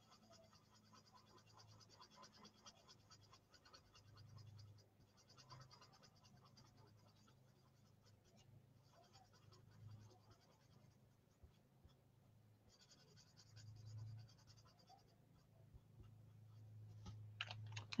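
Near silence: the faint scratching of an alcohol-based blending marker's tip worked over cardstock, with a low steady hum underneath.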